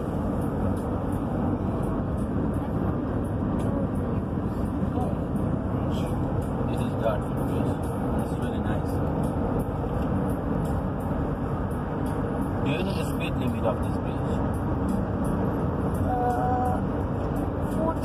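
Steady road and engine noise inside a Honda's cabin, cruising at motorway speed.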